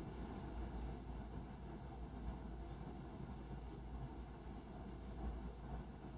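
Faint, rapid high-pitched ticking, a few ticks a second and not quite even, over a low steady room hum.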